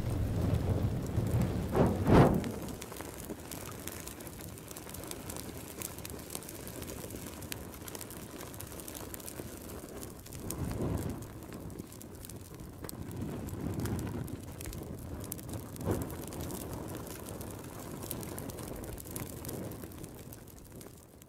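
Sound-design effects for an animated logo and end card: a steady crackling, rumbling noise like fire and embers. A pair of whooshing hits comes about two seconds in, softer swells follow about halfway through and a little later, and a short sharp hit comes near the end.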